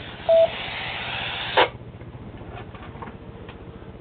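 Two-way FM radio receiver as the far station unkeys: a short single beep, then about a second and a half of static hiss that cuts off with a squelch crash, leaving fainter background noise with a few light clicks.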